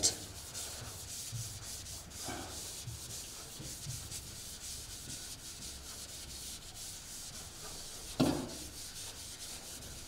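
Chalkboard duster rubbed back and forth across a chalkboard, wiping off chalk writing: a steady, scratchy rubbing made of many quick strokes.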